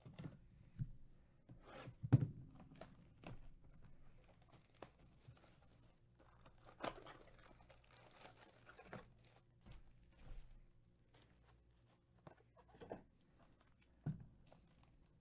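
Gloved hands handling and opening a 2021 Topps Finest cardboard hobby box: faint scattered rustling, tearing and light knocks, with a louder knock about two seconds in.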